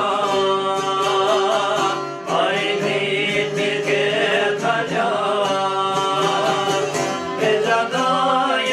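A man sings an Albanian folk song, accompanied by a long-necked plucked lute and a violin bowed while held upright. The singing comes in phrases, with a brief gap just after two seconds.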